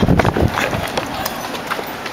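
Running footsteps on pavement, a quick run of footfalls with the rustle and jostle of a camera carried at a run.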